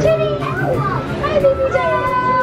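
High-pitched voices of children and adults calling out and chattering, with no clear words.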